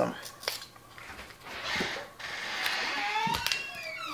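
Dry onion skins rustling and crackling as they are peeled off by hand, with a couple of sharp knocks on the cutting board. Faint gliding tones come in near the end.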